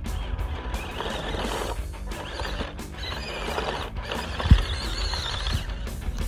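Background music with high, wavering squeal-like sounds that rise and fall several times, and a single low thump about four and a half seconds in.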